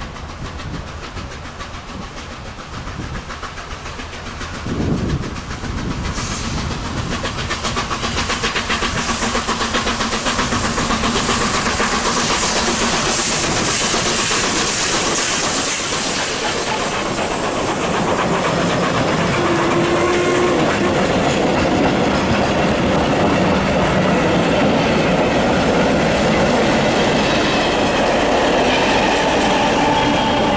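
Czechoslovak steam locomotive 464.202 pulling a passenger train away from a station, growing louder as it draws near, with a short loud burst about five seconds in. Its steam and exhaust hiss peaks as the engine passes close by around the middle, then the carriages roll past with a steady clickety-clack of wheels over the rail joints.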